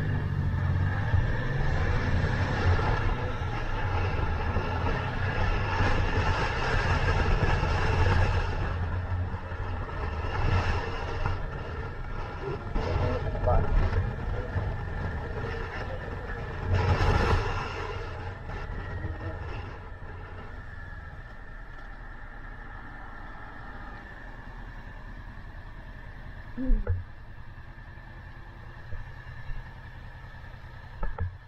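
Motorcycle engine and wind noise heard on a helmet-mounted camera while riding, with a brief louder rush about seventeen seconds in. About twenty seconds in the sound drops to a quieter steady running as the bike slows in traffic, with a single sharp knock near the end.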